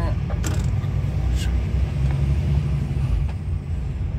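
Lorry engine heard from inside the cab, a steady low rumble as the truck pulls out of a narrow street, with a few light knocks and rattles from the cab.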